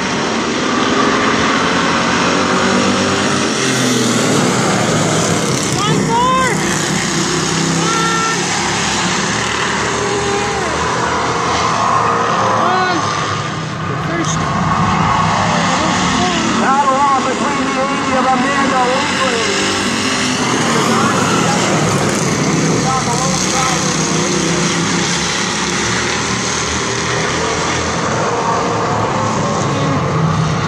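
A pack of oval-track stock cars racing, their engines a steady loud drone that dips briefly about halfway through, with voices heard over it now and then.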